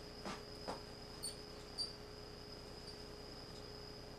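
Faint handling of a plastic anatomical skeleton's legs: two soft knocks, then two short high squeaks about half a second apart, over a steady high-pitched whine.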